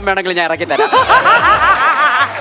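A man's voice, then from under a second in a burst of quick, high-pitched laughter, over background music.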